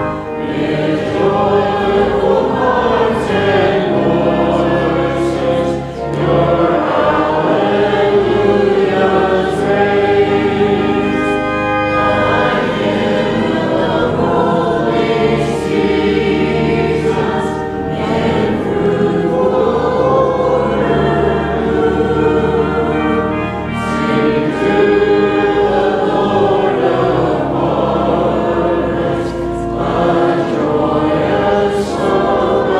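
A group of voices singing a hymn together in sustained phrases, with short dips between phrases.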